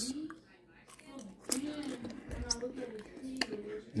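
A person's voice, quiet and low, with a few faint clicks, the clearest about one and a half seconds in and again near the end.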